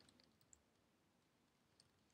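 Near silence, with a few faint clicks of typing on a computer keyboard.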